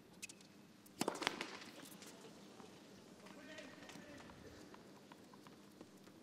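A tennis serve struck with a sharp crack, followed about a second later by a louder cluster of ball impacts. A short voice call comes a couple of seconds after, over a hushed crowd.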